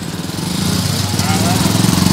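A motor vehicle engine running with a steady drone, growing louder about half a second in, with faint voices over it.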